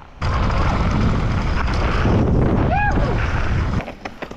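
Heavy wind buffeting on an action camera's microphone: a loud, dense rumbling noise that starts abruptly and cuts off just before the end.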